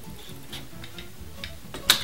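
Faint, scattered light ticks from a bicycle's gear shifter and drivetrain while the front derailleur cable tension is being adjusted, with one sharper, louder click near the end.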